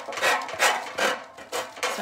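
Sanding block rasping back and forth over the edge of decoupage paper glued onto a metal flower, in short repeated strokes, two or three a second, that tear the excess paper away from the edge.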